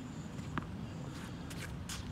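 A few soft footsteps and shoe scuffs on a hard tennis court, over a low steady outdoor background.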